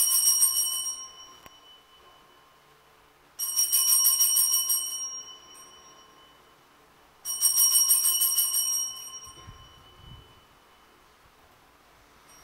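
Altar bells (Sanctus bells) shaken three times, each a rapid jingling ring that dies away over a second or two, the rings about four seconds apart. The ringing marks the elevation of the consecrated host at Mass.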